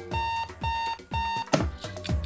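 Three electronic alarm beeps, each a short steady tone, about half a second apart, over music with a steady kick-drum beat. A sharp hit sounds about one and a half seconds in.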